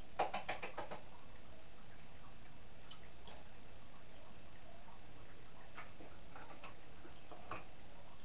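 A quick run of about six light clicks in the first second, the first the loudest, then a few scattered fainter clicks and taps later on: small hard kitchen items being handled, over a steady background hiss.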